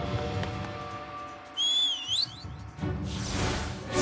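Soft background music fades, then a short cartoon whistle sound effect sounds, dipping in pitch and then rising twice. A rising whoosh follows near the end and leads into louder music.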